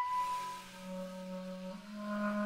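Flute and clarinet duo: the flute's high held note fades out at the start with a brief airy hiss, and the clarinet sustains a soft low note that steps slightly higher near the end.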